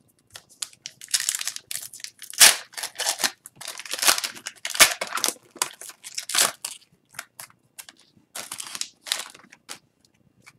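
An Upper Deck hockey card pack wrapper being torn and crinkled by hand: a run of irregular ripping and rustling, with two sharp, loud crackles about two and a half and five seconds in.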